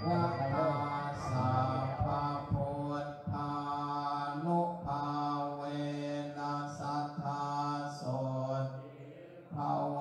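Theravada Buddhist monks chanting in Pali on a low, near-level monotone, in held phrases with short breaks between them, pausing briefly near the end.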